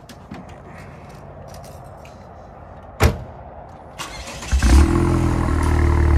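A single sharp thump about three seconds in, then the Vanderhall Carmel's engine cranks on the starter for about half a second, catches with a brief rise and settles into a steady idle.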